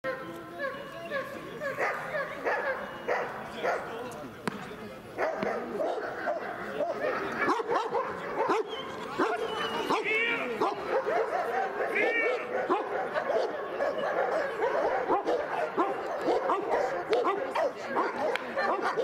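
A dog barking repeatedly, with people's voices talking throughout.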